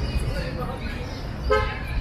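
Steady low rumble of city street traffic, with a short car horn toot about one and a half seconds in.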